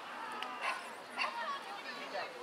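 Young players' voices shouting short, high-pitched calls across the pitch, two brief cries about half a second and just over a second in.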